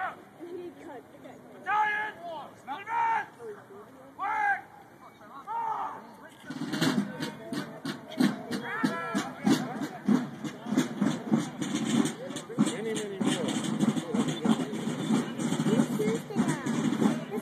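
Outdoor crowd of spectators: a few loud, separate shouted calls in the first seconds, then from about six seconds in dense, close crowd chatter with many quick sharp taps mixed in.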